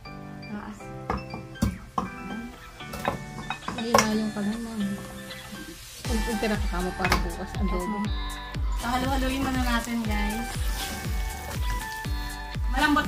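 Background music with a voice singing; a steady bass beat comes in about halfway through. A ladle clinks against the bowl and pot as pieces of boiled pork are spooned in.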